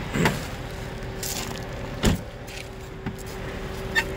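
Two short knocks about two seconds apart as an open rear door of a Hummer H2 and its frame are handled, over a steady hum.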